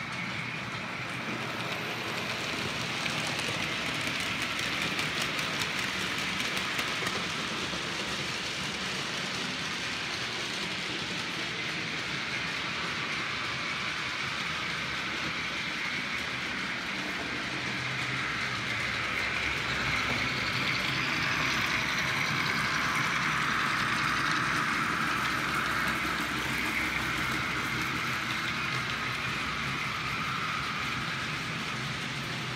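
OO gauge model trains running on the layout: a steady whirr of small electric motors and wheels on the rails, growing a little louder about two-thirds of the way in.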